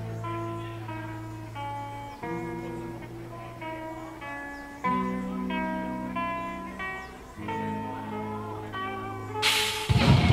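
Live rock band: a clean guitar picks a melody note by note over long held bass notes. Near the end the full band comes in much louder with drums and cymbals.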